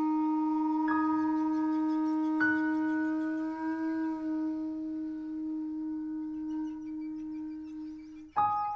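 Freely improvised music: a wooden taonga pūoro flute holds one long, low, steady note, wavering slightly about four seconds in. A grand piano strikes two notes, about one second and two and a half seconds in, that ring on beneath it. The flute note stops just before the end.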